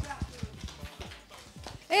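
A few people clapping by hand, a small scattered round of applause that thins out and dies away.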